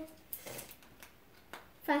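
Faint, brief rustles of small paper pieces being handled, a few soft scrapes over about a second and a half, with a girl's speech starting again near the end.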